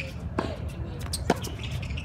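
Tennis ball hit and bouncing on a hard court: sharp pops about half a second in and a louder one a little past the middle, over a steady low rumble.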